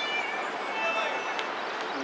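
Steady outdoor background noise, with two faint, short high-pitched calls, one at the start and one about a second in.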